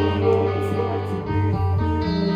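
Live indie rock band playing: electric guitars ringing out chords over a bass line.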